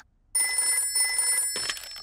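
A telephone bell ringing, starting about a third of a second in, as a call comes in to a desk telephone.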